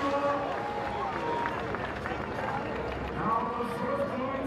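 A voice talking in short phrases over a steady outdoor background of crowd noise and a pack of inline speed skates rolling on asphalt.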